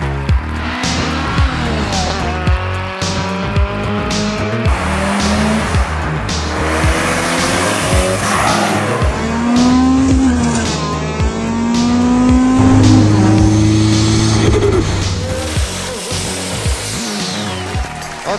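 Sports car engines revving, pitch climbing repeatedly and dropping back as they shift up through the gears, over background music with a steady beat.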